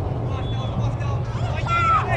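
Players' and spectators' voices calling out across a soccer field, with a high-pitched shout near the end, over a steady low rumble of wind on the microphone.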